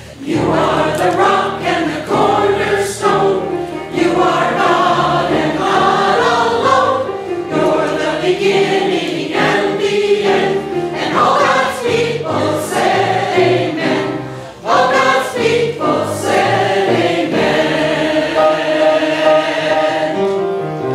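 Mixed church choir of men and women singing a gospel anthem in phrases.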